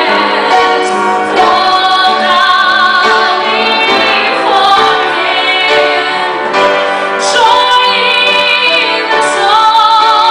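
Gospel choir singing a worship song, led by women's voices holding long notes with vibrato, amplified through microphones.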